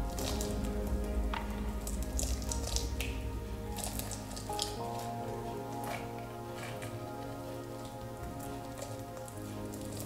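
Background music with steady held chords and a bass. Over it, in the first six seconds or so, come short crackling, squelchy noises of a thick silicone mould being peeled and pulled off a plaster model.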